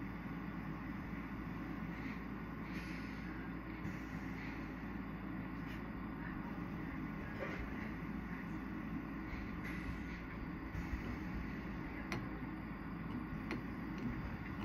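Steady rushing of a two-hose bench torch flame while a glass rod is heated in it, with a few faint light clicks.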